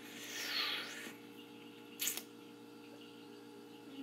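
Quiet pause: a soft breath-like rush of air in the first second, then a single short click about two seconds in, over a steady faint electrical hum.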